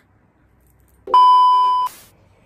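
Edited-in electronic bleep: one steady tone starting about a second in and lasting under a second, ending in a brief crackle of static from a glitch transition effect.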